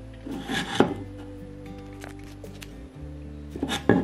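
Two short bursts of handling noise, each a rub ending in a sharp knock: one about a second in and one near the end. They come from hands handling a clear plastic tumbler and a sheet of transfer tape carrying a vinyl decal. Background music plays underneath.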